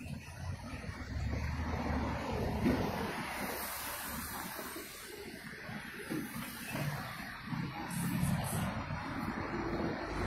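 Steady road-traffic noise, a low rumble and hiss of vehicles going by, heaviest in the first couple of seconds.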